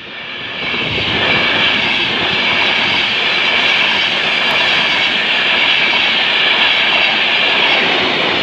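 Express passenger train's coaches running past close by at speed: a steady rush of wheels on rail and air that builds over the first second and then holds.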